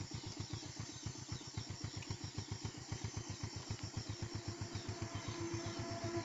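Small underbone motorcycle's single-cylinder engine running steadily at low revs, an even, rapid pulsing as the bike creeps slowly along.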